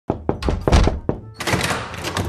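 A quick, irregular run of five or six hard knocks in the first second or so, then a short rushing noise.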